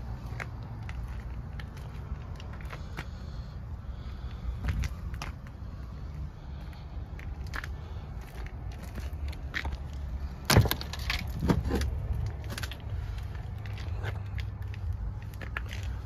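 Handling noise over a steady low rumble, with scattered small clicks; about ten seconds in, a sharp click and a few knocks as a pickup truck's crew-cab rear door latch is pulled and the door swung open.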